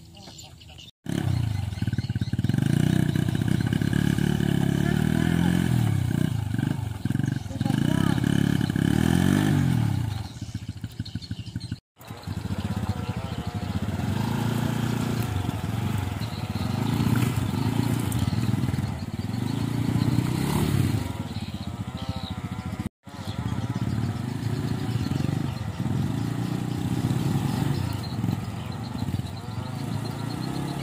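Small motorcycle engines revving up and down again and again as they labour through thick mud. The sound breaks off abruptly twice.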